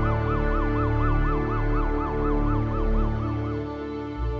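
A fast-wailing emergency siren, its pitch sweeping up and down about four times a second, over a music bed with a steady low pulse; the siren stops shortly before the end while the music goes on.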